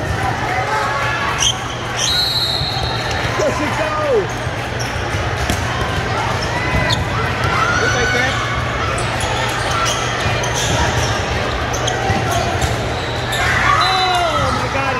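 Busy indoor volleyball hall: overlapping voices from players and spectators, with volleyballs being struck and bouncing every few seconds. A short high whistle sounds about two seconds in, over a steady low hum.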